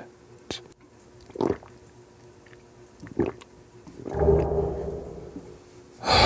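Close-miked male mouth and throat sounds: two short mouth noises about a second and a half and three seconds in, then a low, drawn-out voiced groan over the last two seconds.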